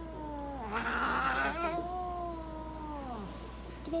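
Ragamuffin cat yowling in anger at being handled: a short yowl, then one long drawn-out yowl with a harsh, hissy start that sags in pitch and fades out about three seconds in.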